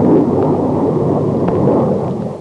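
Jet aircraft flying past low: loud, steady engine noise that begins to ease near the end.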